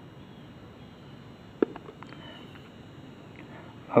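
Quiet background hiss with one sharp click about one and a half seconds in, followed by a few faint ticks.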